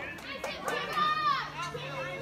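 Background chatter of several distant voices, children among them, with no clear words.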